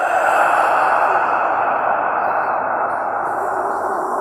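Dramatic film sound effect: a dense, steady rushing noise that slowly fades, with a faint thin ringing high above it.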